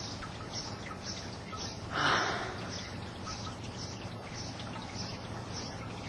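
Outdoor background with small birds chirping faintly and repeatedly, about twice a second. A brief rush of noise, the loudest thing here, comes about two seconds in.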